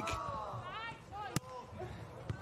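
Sharp smack of a volleyball being hit by hand, once, about a third of the way from the end, over faint calling voices of players and crowd.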